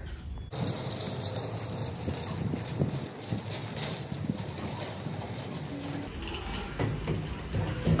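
Dense, irregular rattling and clicking, which gives way to a steadier, quieter background about six seconds in.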